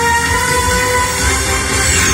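Television sports intro music with long held, horn-like chords, heard through a TV's speaker, and a falling whoosh near the end as the title card comes in.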